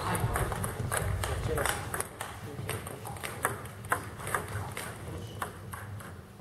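Table tennis balls clicking off bats and tables in an uneven patter of sharp ticks, with rallies going on at several tables at once.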